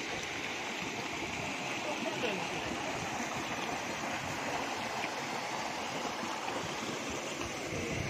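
Shallow rocky stream running and splashing over boulders and a small cascade, a steady rush of water with no breaks.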